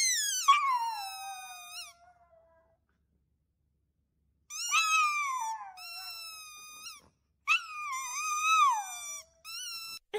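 A chihuahua whining and howling in high, wavering calls that slide down in pitch. One long call comes first, then after a short silence a run of four shorter calls.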